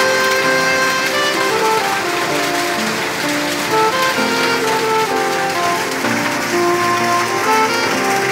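Steady rain falling and running off a corrugated sheet roof, a continuous hiss. Slow background music with long held melody notes is laid over it.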